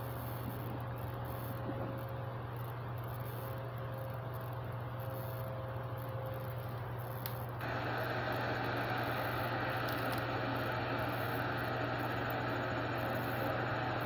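Steady background noise with a constant low hum. The noise turns louder about eight seconds in.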